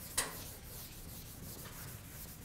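A chalkboard eraser rubbing across a blackboard in short strokes, with one louder swipe about a quarter of a second in.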